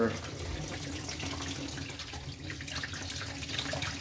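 Water backed up in a clogged bathroom sink pouring steadily out of a loosened plastic P-trap and splashing into a plastic tub below; the basin above is draining through the opened trap under the head of standing water.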